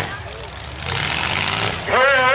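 Demolition-derby pickup truck engines running with a steady low drone under a noisy haze.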